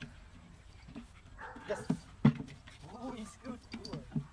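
Belgian Malinois puppy sniffing at a scent box, with a sharp knock a little past halfway. In the second half come short whines that rise and fall in pitch.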